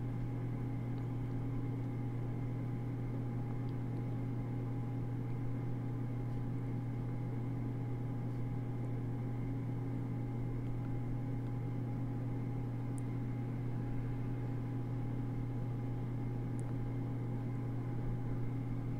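Steady low hum of a running machine, with a few faint higher tones held above it.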